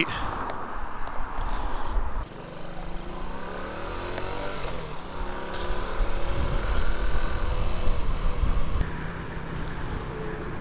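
Honda C90 Cub's small single-cylinder four-stroke engine pulling away through its gears, its pitch rising and dropping several times, under a steady rumble of wind on the microphone. The wind rush is louder for the first couple of seconds.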